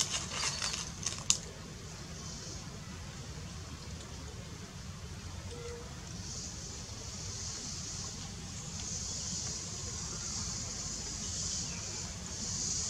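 Outdoor ambience: a few sharp clicks in the first second and a half, then a steady high hiss over a low rumble, the hiss growing louder from about six seconds in.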